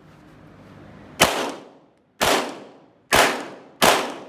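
Four pistol shots, about a second apart, the last two closer together, each followed by a short echoing tail.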